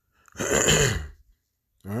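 A man clearing his throat once, a rough sound lasting about a second, with the start of a spoken word near the end.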